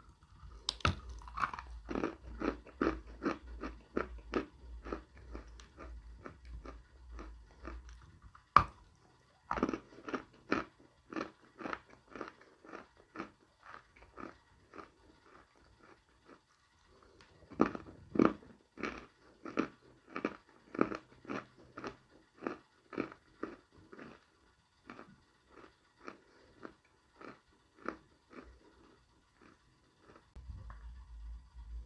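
Chewing and crunching of a hard chunk of dry Ural edible clay (glinomel), at roughly two crunches a second. There is one sharp bite about eight and a half seconds in, the chewing goes quieter for a few seconds around the middle, and it fades toward the end.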